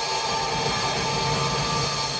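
A held, ringing drone from amplified band instruments, steady throughout with no drum beat.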